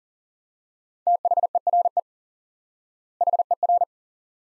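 Morse code sent at 40 words per minute as a single-pitch beeping tone: one word about a second in, then a second, shorter word near the end. The two words spell "there" and "her".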